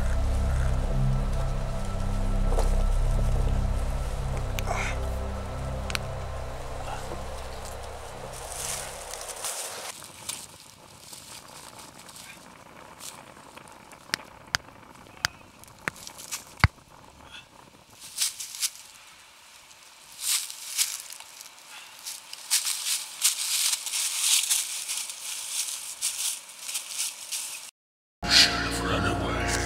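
Background music with a deep low drone ends about nine and a half seconds in. Then come scattered sharp crackles and rustling of dry leaf litter, busier near the end.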